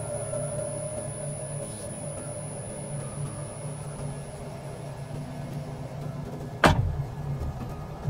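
A car door slammed shut once, a single sharp bang about two-thirds of the way through, over a low steady hum.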